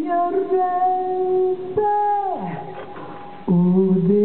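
A woman singing long held notes. About halfway a note slides down in pitch and fades, and a new phrase starts near the end.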